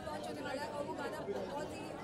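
A woman talking, with crowd chatter behind her.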